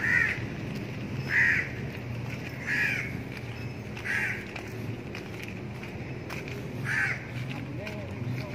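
A crow cawing: five short, harsh caws, about one every second and a half, with a longer pause before the last.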